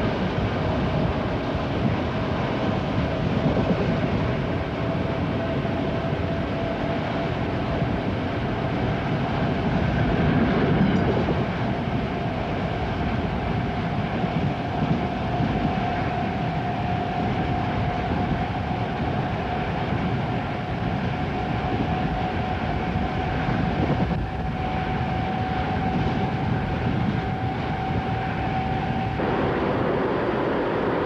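Electric passenger train running along the track, heard from inside the carriage: a steady rumble and hiss with a faint whine that rises slowly in pitch.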